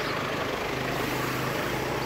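Town street traffic: cars and motorbikes going by, a steady wash of traffic noise with a low engine hum underneath.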